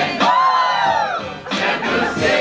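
A group of people singing together, with one long held note that rises and falls.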